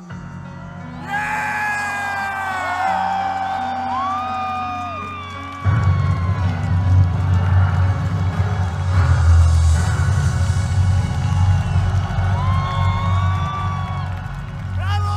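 Large festival crowd cheering, screaming and whooping as a live song ends. About six seconds in, a loud low rumble suddenly joins the cheering.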